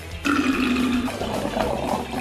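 Water rushing and gurgling down through a drain trap, starting suddenly, with a steady tone under the first half: the drain running freely once the clog is cleared.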